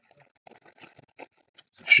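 Faint crinkling of a clear plastic bag around a model-kit sprue as it is handled: a scatter of soft crackles, followed by a man's voice near the end.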